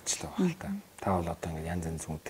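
Speech only: one person talking in conversation, with a brief pause a little before halfway.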